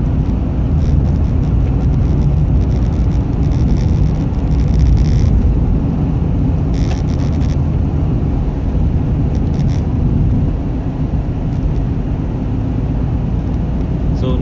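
Steady low rumble of a 4x4 on winter tyres, heard from inside the cabin as it drives over a snowy, icy highway. Two short bursts of hiss come about five and seven seconds in.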